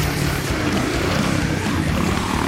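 Motocross dirt bike engine running steadily under throttle as the bike crosses the track.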